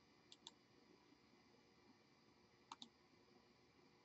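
Faint computer mouse clicks in near silence: two quick pairs of clicks, one near the start and one near three seconds in.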